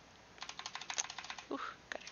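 Calculator keys being pressed in a quick run of about a dozen clicks lasting about a second, as the calculator is cleared for the next calculation.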